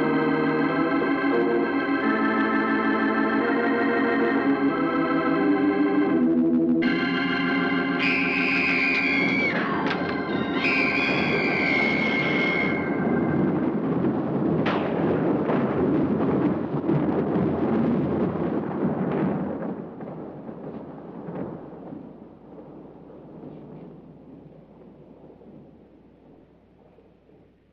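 Eerie organ music in sustained, shifting chords. After a short break about six seconds in, high gliding tones sound over the organ, a sharp hit comes about halfway through, and then a dense swell of score fades away over the last several seconds.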